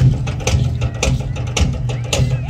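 Fast, steady percussion music accompanying a group dance: sharp drum strokes in an even rhythm, with a stronger accent about twice a second.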